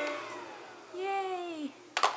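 A baby's drawn-out vocal sound that rises a little and then falls, lasting under a second, about a second in, after a falling tone fades out at the start. A sharp knock comes right at the end.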